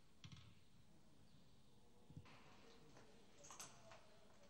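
Near silence, broken by three faint clicks.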